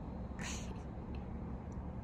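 A domestic cat makes one short, breathy, high-pitched sound about half a second in, over a steady low background hum.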